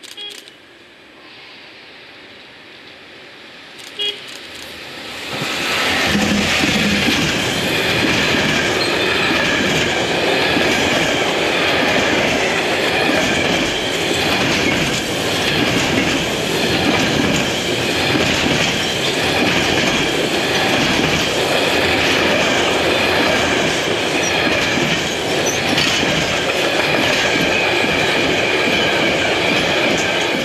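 Freight train passing close at speed: after a quieter approach, loud steady wheel-on-rail rumble and clatter sets in about five seconds in as the locomotive and a long rake of covered sliding-wall wagons roll by.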